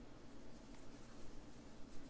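Faint scratchy rustling of fingers against cotton yarn as hands press polyester fiber fill stuffing into a crochet apple.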